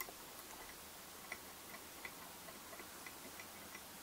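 Near quiet, with faint, irregular light ticks as fly-tying thread is wound down the hook shank in the vise.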